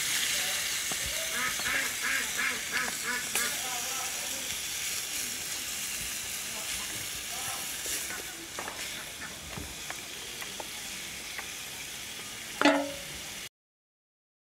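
Fish and sponge-gourd curry sizzling and bubbling in an aluminium pot over a wood fire just after water has been added, with a spatula stirring it; the sizzle slowly dies down. A short loud call comes near the end, then the sound cuts off suddenly.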